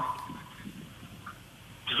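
A quiet pause with only faint background noise over the remote link. No engine is running yet.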